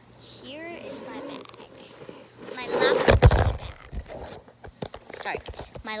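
A child's wordless voice with a rising and falling pitch, then a loud rustling thump about three seconds in: handling noise as the phone recording it is moved, followed by a few light clicks.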